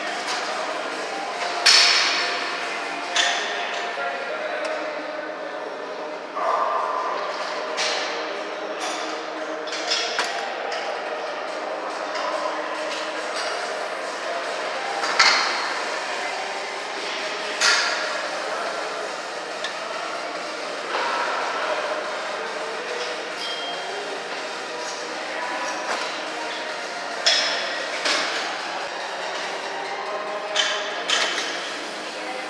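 Plate-loaded weight machine clanking during repetitions: sharp metal clinks and knocks at irregular intervals, a few louder than the rest, over steady gym background noise.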